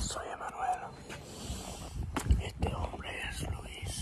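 A man's voice speaking softly and indistinctly right at the phone's microphone, with a few short knocks of the phone being handled.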